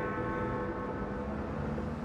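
A single bell-like tone rings, with many steady overtones, and fades slowly over a low rumble.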